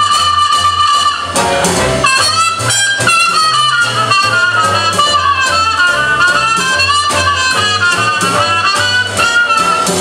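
Trumpet solo in a traditional New Orleans-style jazz band, backed by a rhythm section of string bass, banjo and drums. The trumpet holds one long high note for about the first second and a half, then plays a run of quick, short phrases.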